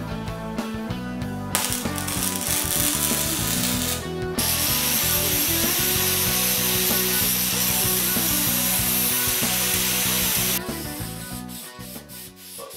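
Over background music with a steady beat, a wire-feed welder crackles on the steel motorcycle frame for a couple of seconds, then an angle grinder grinds the frame tube with a steady high whine for about six seconds and stops near the end.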